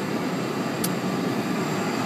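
Steady vehicle noise, a continuous even rumble and hiss, with one short sharp click a little before the middle.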